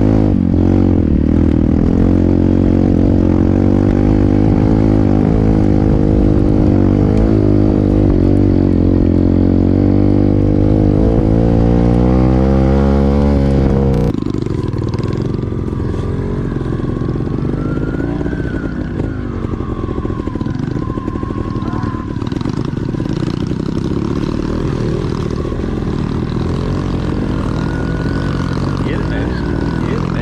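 Dirt bike engine running under the rider, steady with a rise and fall in pitch as the throttle changes. About halfway in the sound cuts abruptly to a rougher, slightly quieter mix with the engine sound wavering.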